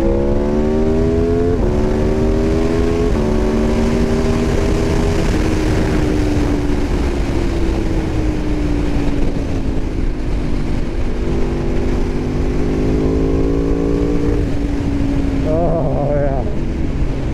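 Aprilia RSV4 1100 Factory's V4 engine pulling hard with two quick upshifts, about one and a half and three seconds in. The engine then rolls off, its pitch slowly falling before holding steady, under wind rush on the onboard microphone.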